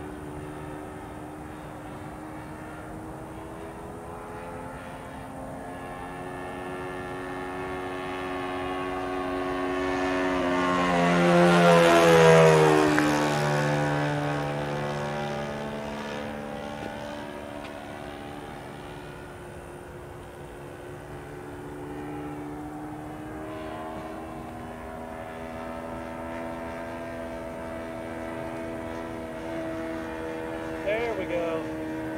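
Saito 1.00 four-stroke glow engine with a Keleo exhaust, in a Hanger 9 P-40 RC model plane, running steadily in flight. It grows louder to a flyby peak about twelve seconds in, drops in pitch as it passes, fades, then builds again near the end.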